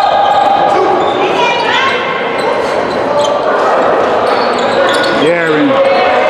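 Basketball game play in an echoing gym: a ball bouncing on the hardwood court and short high squeaks of sneakers, over a steady murmur of voices. A voice calls out near the end.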